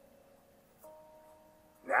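Near silence, then a faint steady tone held for about a second, made of a few pitches sounding together. A man's voice begins at the very end.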